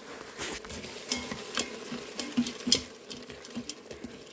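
Frozen pepper strips sizzling in hot oil in an Instant Pot's stainless steel inner pot, with a plastic spatula scraping and clicking against the pot as they are stirred.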